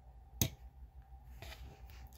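A single sharp click about half a second in as a fingernail flips open the small hinged hood of a 1:64 die-cast model car; otherwise faint room tone.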